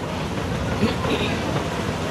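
Steady rumbling background noise with faint voices in it.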